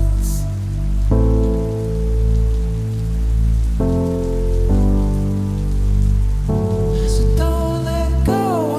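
Downtempo future-garage electronic music: sustained synth chords that change every second or two over a deep bass that swells and fades about once a second, with a rain-like hiss laid beneath. A brief airy swoosh comes just after the start and another near the end.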